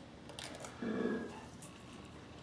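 Quiet handling on a workbench: a few light taps and a soft rub as a gloved hand moves a drill battery case filled with wet grout and sets it down.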